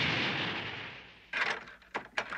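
A cartoon sound effect of a rushing surge, the flood of blood, fading away. About a second and a half in, a sharp knock or crack cuts in, followed by another short crack near the end.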